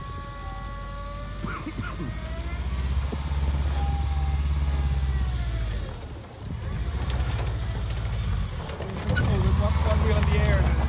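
Volkswagen Vanagon Syncro's engine running low and steady as the van reverses down a steep dirt slope, the rumble swelling about three seconds in, easing off briefly past the middle, then picking up again.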